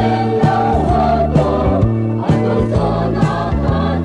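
Church choir singing in harmony over instrumental backing with a steady beat.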